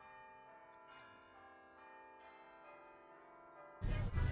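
Faint bell-like chimes: several clear notes enter one after another about a second apart and ring on together.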